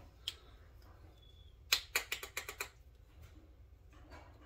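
A makeup brush tapped against a powder compact to knock off excess powder: one sharp click, then a quick run of about eight sharp clicks partway through.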